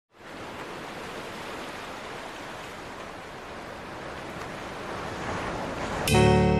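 Ocean surf: a steady rush of waves breaking on the shore, swelling a little louder toward the end.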